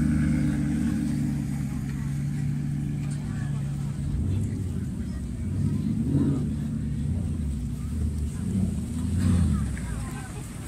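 Maserati GranTurismo MC Stradale's V8 running steadily at low revs as the car pulls away. From about halfway a Spyker C8's engine takes over, swelling briefly around six seconds and again near the end as it rolls past.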